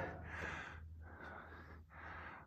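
Faint human breathing: two soft breaths, each under a second long.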